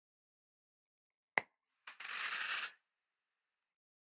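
A single sharp click, then just under a second of soft hiss as a draw is taken on a squonk vape mod with a rebuildable dripping atomizer (Ijoy Capo Squonker with a Wotofo Nudge RDA): air and vapour drawn through the coil.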